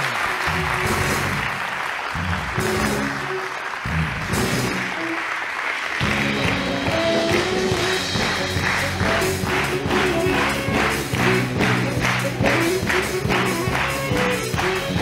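Studio audience applauding over music. About six seconds in, the clapping gives way to music with a steady beat of about two to three beats a second.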